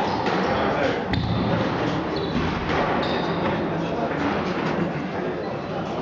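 Squash rally: a squash ball struck by rackets and hitting the court walls, sharp knocks about a second apart. The knocks ring in the court, over a steady murmur of background voices.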